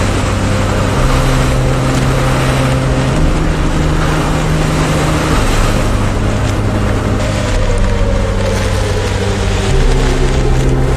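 Hurricane-force wind and driving rain rushing continuously, under background music of long held low notes that shift pitch every couple of seconds.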